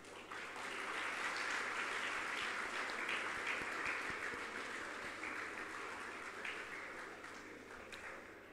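Audience applauding. It starts just after the beginning, is strongest in the first few seconds, then slowly dies away.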